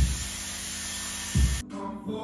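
Handheld hot-air hair brush blowing steadily, a hiss with a low hum, under music with a deep beat; the blowing cuts off suddenly about a second and a half in, leaving the music with singing.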